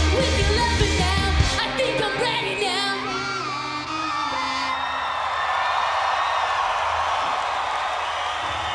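A live rock band ends a song. The drums and bass stop about a second and a half in, and the last sung and guitar notes ring on. From about halfway the crowd takes over, cheering and whooping.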